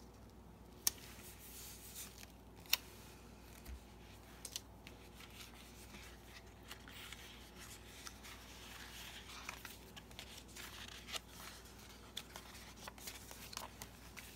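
Quiet paper handling: a sticker being peeled off its backing and pressed onto a planner page, with two sharp clicks in the first few seconds, then rustling and small clicks as a sticker book is opened near the end.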